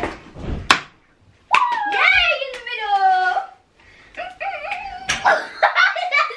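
A dart strikes the spinning mystery-wheel dartboard with a short sharp knock under a second in. It is followed by a girl's long wavering cry that falls in pitch, then laughter.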